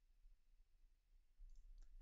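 Near silence, with a few faint computer mouse clicks near the end.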